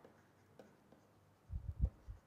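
Stylus writing on a pen tablet: faint at first, then a few soft, low knocks in the last half second.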